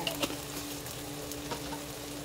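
Watery sauce of carrots and onions simmering in a wok on a gas stove, bubbling and sizzling steadily. A faint steady hum runs underneath, with a couple of light clicks.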